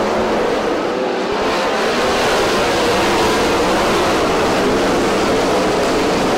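410 winged sprint cars racing on a dirt oval: a steady, loud wall of engine noise from several cars at full throttle.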